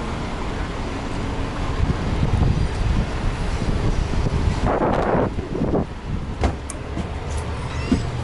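City street traffic: a steady rumble of cars, with a short rushing noise about five seconds in and a couple of sharp knocks near the end.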